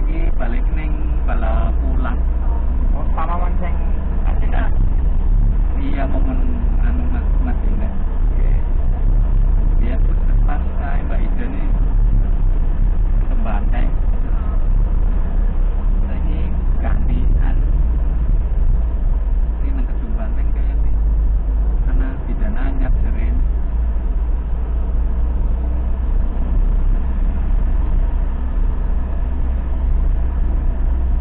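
Steady low engine and road rumble inside a moving ambulance's cab, with indistinct voices talking at times.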